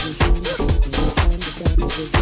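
Electronic dance music from a live DJ mix, with a steady four-on-the-floor kick drum at about two beats a second.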